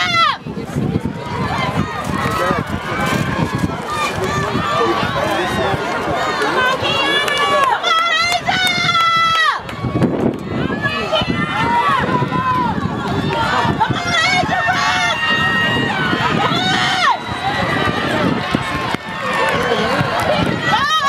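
Track-meet spectators yelling and cheering on relay runners, several voices overlapping throughout, with a loud high-pitched yell about eight seconds in.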